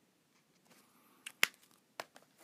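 A Copic marker being capped and put down: short, sharp clicks about a second and a half in, and another at the end, after a near-silent start.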